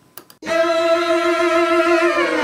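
A bowed string instrument plays one long, steady held note that comes in about half a second in, after a couple of faint clicks. Right at the end the note starts to slide down in pitch. The string track is played back through a dark slap-chamber reverb.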